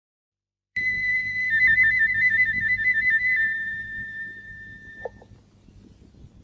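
Silence for almost a second, then a new song opens with a high, flute-like whistled trill. The trill warbles between two close notes, settles on one held note and fades out by about five seconds, over a low steady hum.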